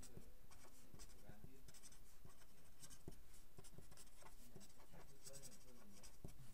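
Felt-tip marker writing on paper in short, quiet strokes.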